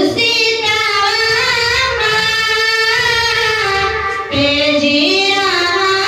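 A female voice singing an Urdu naat in long held notes that waver in pitch. A short break comes a little past four seconds, then a new phrase begins on a higher note.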